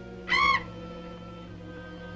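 A single short, shrill screech from the giant bat, a film sound effect lasting about a third of a second and rising then falling in pitch, a little way in. Quiet orchestral underscore runs beneath it.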